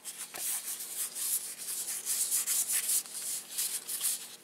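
A stack of cardboard trading cards being handled and fanned out in the hands, the cards sliding and rubbing against each other in a continuous rustle made of many quick strokes.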